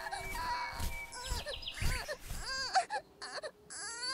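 Baby crying in wavering wails, with a brief lull about three seconds in.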